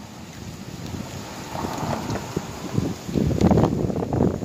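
Wind buffeting a phone's microphone, an uneven low rumble that grows stronger about three seconds in.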